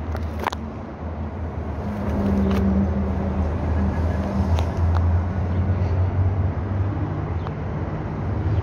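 A motor running steadily with a low hum, joined by a few faint clicks.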